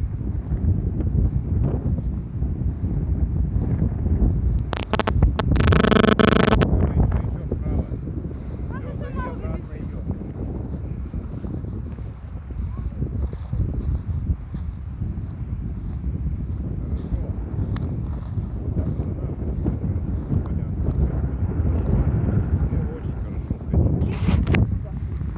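Wind buffeting the camera's microphone as a steady low rumble. About five seconds in, a loud pitched sound lasts nearly two seconds.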